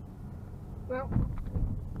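Haval H6 SUV driving in town traffic, heard from inside the cabin: a steady low rumble of road and engine noise, with a few low thumps about a second in.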